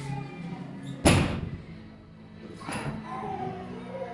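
A 180 kg barbell loaded with 25 kg plates is set down on the lifting platform between deadlift reps, giving one heavy thud about a second in that rings out briefly. A softer noise follows near three seconds. Steady background music plays underneath.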